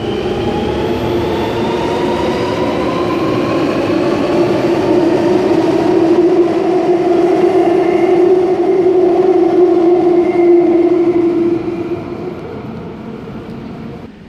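Alstom Metropolis driverless metro train accelerating out of an underground station: electric traction motors whine, rising in pitch, over steady wheel and rail noise. The sound fades away over the last couple of seconds as the train goes into the tunnel.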